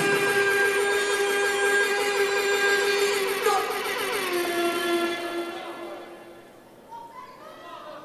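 A man's voice holding one long drawn-out call, as a ring announcer stretches out a fighter's name. The pitch steps down about four seconds in, and the call fades out by about six seconds.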